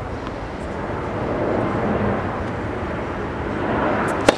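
Steady rumble of an airplane flying over, swelling slightly midway, with a couple of faint taps of a tennis ball bounced on the hard court before a serve.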